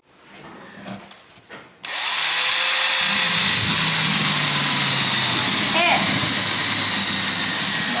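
A few faint knocks as the iPod touch is pressed into a wooden holding block, then about two seconds in a power drill starts and runs steadily, its bit boring into the iPod's shattered glass screen.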